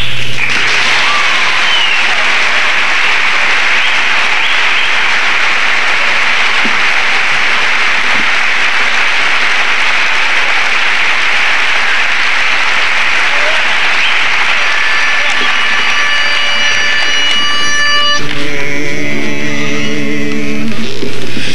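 Audience applauding steadily after a song. As the applause dies away near the end, a steady pitched note sounds, and then a male barbershop quartet starts singing a cappella in close harmony.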